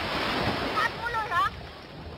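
Sea water washing at the shore, with a rush of noise in the first second and wind on the microphone. A person's voice calls out briefly about a second in.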